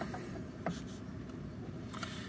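Faint handling of a steel push-rod depth gauge being set against a brake booster, with one light click about two-thirds of a second in, over quiet room noise.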